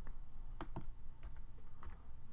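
A few separate computer-keyboard keystrokes, spaced apart, as a number in code is deleted and retyped.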